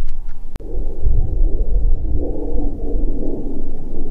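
Wind buffeting the microphone: a loud, uneven low rumble, with one sharp click about half a second in.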